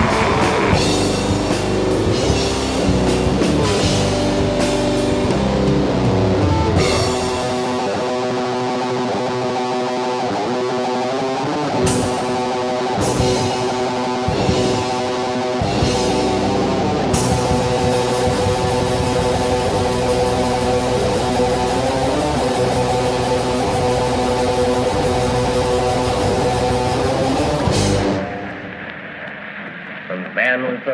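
Melodic death/black metal band recording: distorted electric guitars over a drum kit, settling into sustained chords about a third of the way in, then fading out a couple of seconds before the end.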